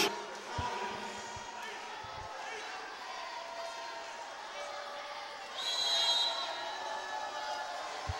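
Arena crowd noise in a large sports hall, with a few dull thuds of a volleyball bouncing on the court in the first couple of seconds. About six seconds in comes a brief shrill high tone.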